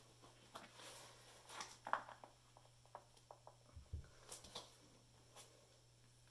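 Faint scattered clicks and taps of a hammer and gloved hands working at the stuck lid of a plastic paint container, a few at a time with pauses between, over a low steady hum.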